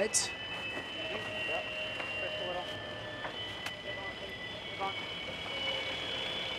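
Steady high-pitched whine of several held tones over a hiss of wind and water: the on-water sound of F50 foiling race catamarans at speed. Faint voices come through now and then.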